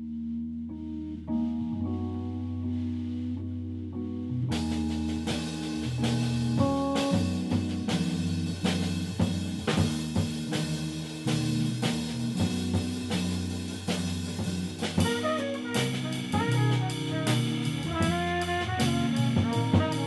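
Small-group jazz music with drum kit and horns. It opens softly on sustained low notes, and the full band comes in with the drums about four and a half seconds in; a horn melody line stands out in the last few seconds.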